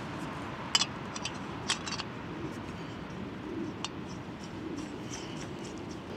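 A few light, sharp clicks and taps from handling a gas canister and fitting it to a camping stove's fuel-line connector, over a steady low background hiss.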